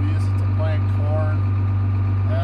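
John Deere 7700 tractor's diesel engine idling steadily while it warms up after a hard cold start, heard from inside the cab. A man is talking over it.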